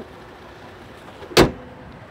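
The Jeep Grand Cherokee's hood is closed: a single loud slam about one and a half seconds in, over a low steady background.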